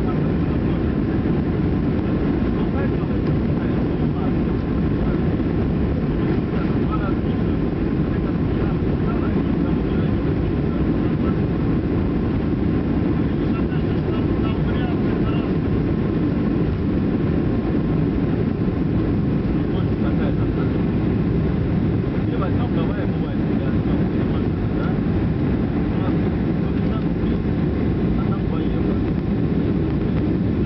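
Boeing 737-300 engines at takeoff thrust, heard from inside the cabin over the wing: a steady, loud, deep roar through the takeoff roll, continuing as the aircraft lifts off and climbs in the second half.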